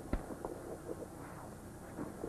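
A sharp click, then faint handling noise as a protective gas mask is put on, over the steady hiss of an old television soundtrack.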